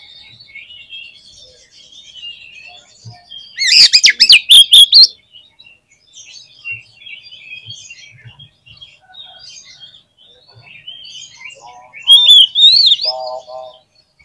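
Oriental magpie-robin (kacer) in full song: a steady stream of soft, high chattering and warbling, broken by two loud bursts of whistled phrases, one about four seconds in and one near the end.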